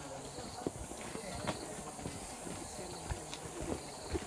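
Footsteps of several people walking on a dirt path, a loose, irregular patter of soft steps, with quiet voices talking in the background.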